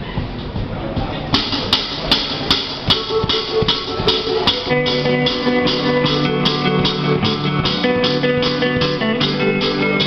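Live band starting a song: a steady beat of even strokes, about two and a half a second, begins about a second in, and held electric guitar chords join about five seconds in.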